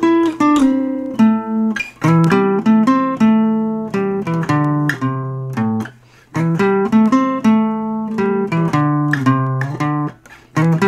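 Washburn parlor acoustic guitar playing a blues riff of single picked notes, with low bass notes and a brief pause about six seconds in.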